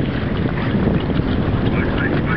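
Wind buffeting the microphone: a loud, steady, rumbling noise.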